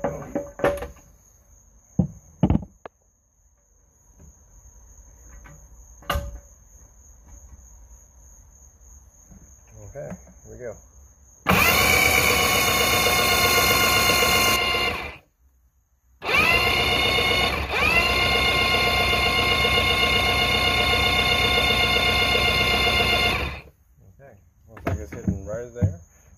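Electric starter cranking a 1979–80 Mercury 850 inline-four two-stroke outboard in two runs, about three seconds and then about seven, each a steady whine that cuts off abruptly. The engine does not catch: it is being cranked so the idle timing can be read with a timing light. A few sharp clicks come before the cranking.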